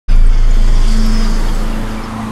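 Cinematic logo-intro sound design: a sudden loud low boom right at the start that turns into a deep sustained rumble with a noisy, hissing texture over it, slowly fading.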